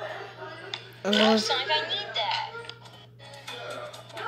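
Voices from a played-back video, with some music under them, loudest about a second in, over a steady low electrical hum.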